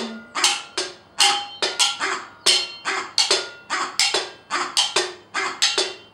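Frying pans struck as drums in a steady rhythm, about three to four hits a second, each hit ringing briefly with a metallic tone.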